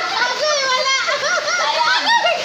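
Several children's voices talking and calling out over each other at once, a lively, continuous crowd of chatter.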